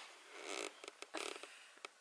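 Close handling of a hand-held camera against bedding and clothing: two short, faint rustles and a few small clicks.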